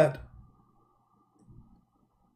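A man's spoken word trailing off, then a pause of near silence with a couple of faint low clicks over a thin, steady faint tone.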